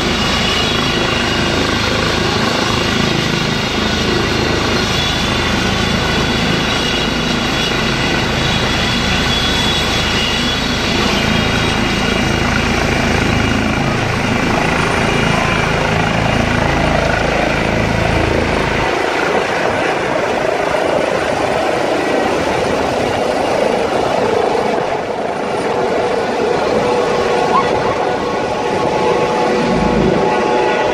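Trauma helicopter running at full power on the ground, with its rotor beat and a steady high turbine whine, then lifting off and climbing away overhead. The deep rotor rumble falls away about two-thirds of the way through as it rises.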